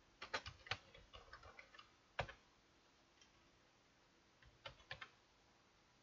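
Computer keyboard typing: a run of quick key clicks for the first two seconds, one louder keystroke just after two seconds in, then a short burst of a few more keys near five seconds, as terminal commands are entered.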